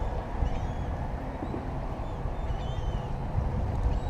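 Wind buffeting the microphone in a steady low rumble, with a few faint high chirps about half a second in and again two to three seconds in.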